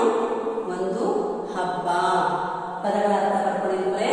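A woman's voice reading out Kannada letters and words in a slow, chanted sing-song, with several drawn-out syllables.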